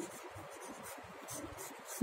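Pen writing on a paper worksheet: faint, irregular scratching strokes.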